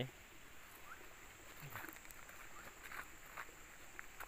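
Quiet outdoor ambience: faint distant voices now and then over a faint steady high-pitched hum.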